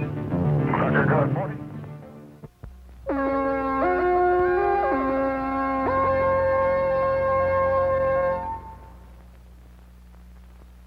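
Film music fading out over the first two seconds. A second later a held chord starts and builds as new notes slide in one after another. It sounds for about five seconds, then drops away to a faint low hum.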